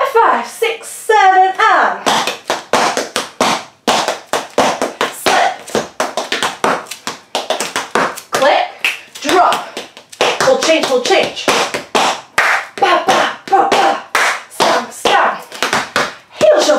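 Metal taps on tap shoes striking a hard floor in a fast, continuous run of steps (shuffles, pick-ups, stamps and hops), several sharp clicks a second. A woman's voice counts in over the first couple of seconds and calls out briefly here and there.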